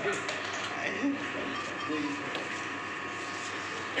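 Indistinct murmured talk among several people in a small room, low and broken, over a steady background hum.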